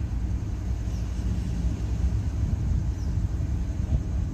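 Steady low rumble of a car idling, heard from inside the cabin.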